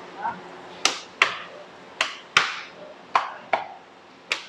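Paratha dough being stretched by flinging it and slapping it down on a steel worktop: six sharp slaps in three pairs, the pairs about a second apart.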